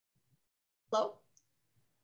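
Near silence on a video-call line, broken about a second in by one short spoken syllable.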